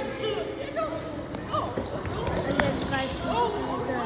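Basketballs bouncing on a wooden gym floor, several separate thumps, with voices talking in the background.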